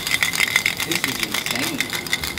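Aerosol spray paint can being shaken, the metal mixing ball inside rattling in a fast run of sharp, ringing clicks.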